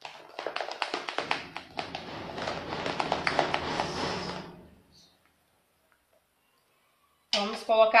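Rapid clicking and scraping of a spatula stirring pink-tinted whipped cream in a plastic bowl, running for about four and a half seconds and then cutting off abruptly.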